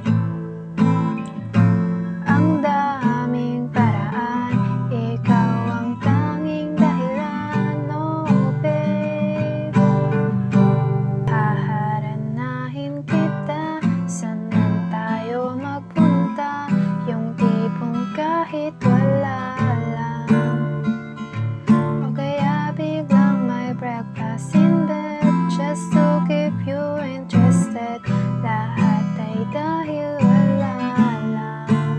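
Acoustic guitar strummed through chord changes in a steady down-down-up-down-up-down-down rhythm.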